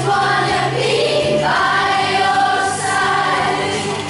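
A group of children singing a song together in held notes, changing note about one and a half seconds in.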